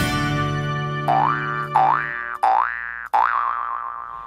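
Intro jingle music: a held chord fades out while four quick upward-sliding, boing-like tones sound in turn, about two-thirds of a second apart.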